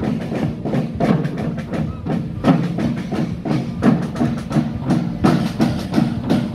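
Marching drums carried by walking marchers, beaten in a steady rhythm of about two strokes a second.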